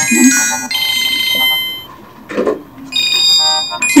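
Mobile phone ringtone playing a bright electronic melody of high tones; it breaks off for about a second midway, then starts again.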